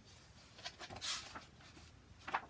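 Paper pages of a hardcover picture book being turned by hand, a short rustle about a second in with a few lighter rustles around it.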